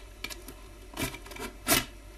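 Yellow utility knife cutting the packing tape on a cardboard box: a few short scraping strokes of blade on tape and cardboard, the loudest near the end.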